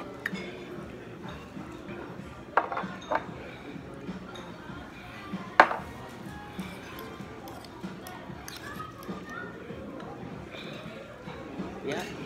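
A metal utensil clinking against a ceramic bowl a few times, the sharpest clink about halfway through, over background music.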